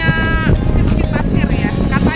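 A woman's voice talking over background music, with one long drawn-out vowel in the first half second.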